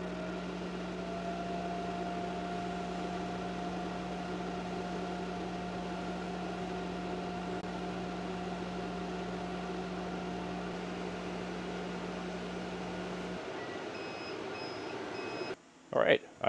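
Thunder Laser BOLT 30 W RF CO2 laser cutter running a cutting job: a steady machine hum with a faint tone that wavers as the laser head moves. Near the end the low hum stops and a few short beeps follow.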